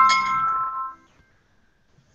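A single bell-like chime note at the end of a short outro jingle: a few clear tones struck together that ring and fade away within about a second, leaving near silence.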